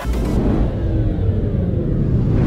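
Deep, steady rumble of a logo-sting sound effect, with faint slowly falling tones above it and almost nothing in the high end.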